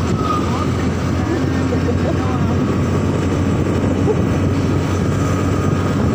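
Motorcycle engine running steadily at cruising speed, under a constant rush of wind and road noise, with a thin steady whine above it.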